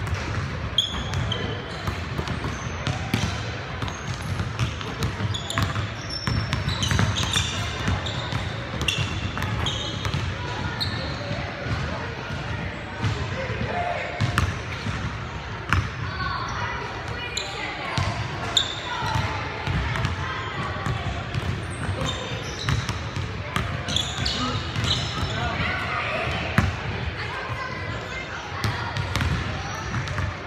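Pickup basketball in a large gym: a basketball bouncing on the hardwood floor in repeated sharp knocks, short high sneaker squeaks, and indistinct players' voices, all echoing in the hall.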